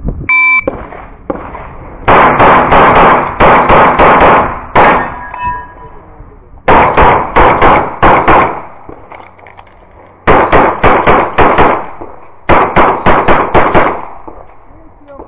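An electronic shot timer beeps once, briefly, then a CZ SP-01 Shadow 9 mm pistol fires four fast strings of shots, each of about six to eight shots in under two seconds, with pauses of one to two seconds between the strings.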